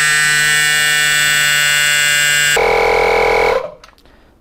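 Makita DMP180 18V cordless tyre inflator's compressor running with a steady high whine while pumping up a wheelbarrow tyre. Its tone changes about two and a half seconds in and it stops about a second later, having reached the set 30 psi.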